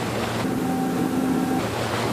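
Spray and wake water rushing along the hull of a patrol boat under way at speed, a loud steady rush, with the boat's motor humming steadily through the middle of it.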